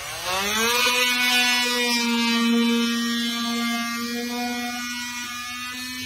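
Milwaukee cordless oscillating multi-tool with a razor blade fitted, cutting through a sheet of material. Its pitch rises over the first second as it comes up to speed, then holds a steady buzzing hum that eases slightly toward the end.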